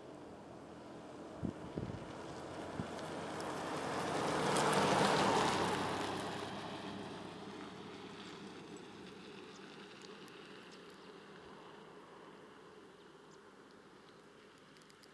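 An SUV driving past on a paved road: its engine and tyre noise swells to its loudest about five seconds in, then fades slowly as it drives away. A few sharp clicks come shortly before it passes.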